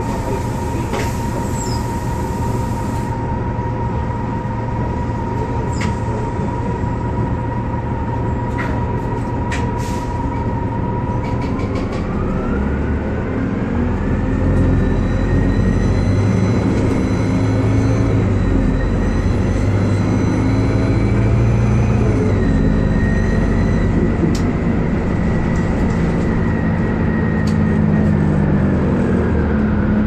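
A 2004 Orion VII CNG city bus with a Detroit Diesel Series 50G four-cylinder natural-gas engine and ZF Ecomat transmission, holding a steady high whine at first. About twelve seconds in it pulls away: the engine note strengthens and the whine rises in pitch for about ten seconds, drops at a gearshift, then holds level and begins to fall near the end as the bus eases off.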